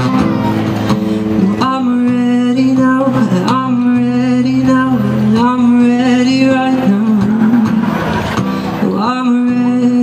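A young man singing with an acoustic guitar, strumming chords under long sung phrases with held, wavering notes.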